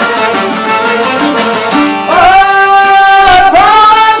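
Albanian folk song on long-necked lutes of the çifteli type, strummed in a steady quick rhythm. About halfway through a man's voice comes in on a long held note, dipping briefly and moving to a new note near the end.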